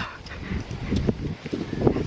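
Footsteps on dry ground and leaf litter, an irregular run of soft steps, with low wind rumble on the microphone.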